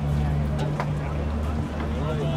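A steady low hum with voices of players on a football pitch, and a couple of faint knocks about half a second and just under a second in.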